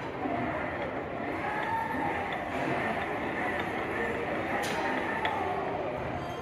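Indistinct voices and general chatter in a large public hall, steady throughout.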